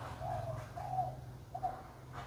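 A dove cooing: three short, soft coo notes in about two seconds.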